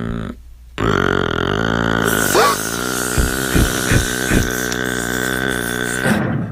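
A long, low, buzzing burp-like vocal sound that starts just under a second in after a brief gap, with a rising pitch glide about two and a half seconds in and a few short pulses in the middle.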